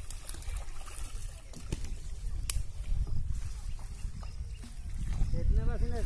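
Pond water sloshing and splashing as men wade and drag a seine net through it. A low rumble lies underneath, with a few sharp clicks.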